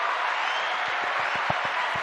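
Crowd applause played as a sound effect, an even wash of many hands clapping at a steady level.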